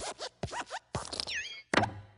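Cartoon sound effects of the Pixar desk lamp hopping on and squashing the letter I: a quick run of short springy thuds with squeaky falling and rising pitch glides, the loudest thud near the end.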